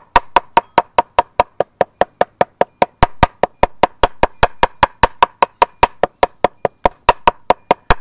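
Steel claw hammer beating rapidly and steadily on paper over a wooden breadboard, about five blows a second, pounding a poppy petal flat so its dye soaks through the paper.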